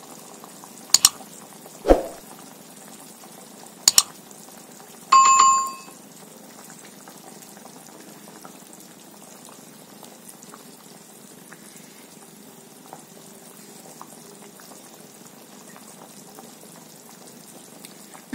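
A pot of kulambu gravy boiling with a steady bubbling. In the first few seconds there are several short knocks and plops as lentil dumplings are added. About five seconds in there is a brief bell-like ring.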